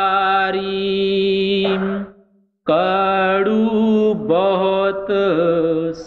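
A solo voice chanting a line of a devotional hymn in long, drawn-out sliding notes. It breaks off briefly about two seconds in, then resumes.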